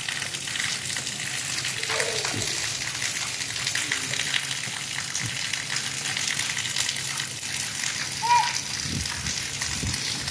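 Steady hiss of rain falling, with a child laughing at the start and a short, high child's squeal near the end.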